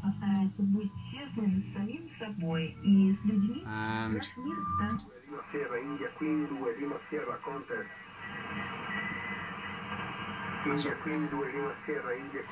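Shortwave receiver audio from a Kenwood TS-870 transceiver: an AM broadcast station on the 40-metre band carrying a voice, thin and hissy as radio audio is. About four seconds in the set is retuned, with a short squeal and whistle, and a second station comes in with a voice over static.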